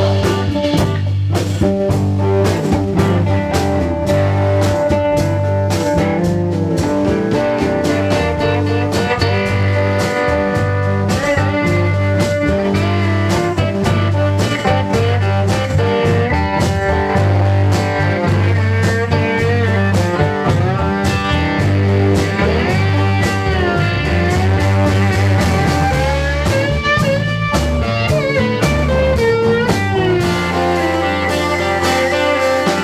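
Live blues-rock band playing an instrumental break: steel guitar played with a bar, its notes sliding up and down, over electric guitar, Nord Electro 4 keyboard and a steady bass line.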